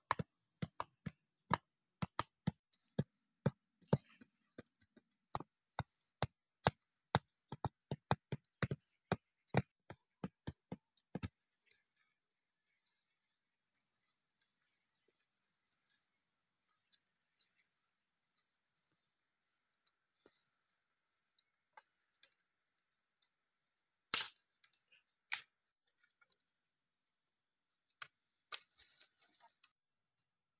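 Sharp chopping strikes on wood, two or three a second for about eleven seconds. After a quiet stretch come two single heavier strikes about a second apart, and a few lighter ones near the end.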